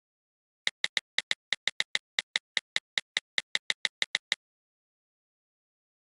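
Ticking sound effect of a wheel-of-names spinner app as the wheel spins: about twenty sharp clicks, around six a second, that stop suddenly a little over four seconds in, when the wheel comes to rest on the winner.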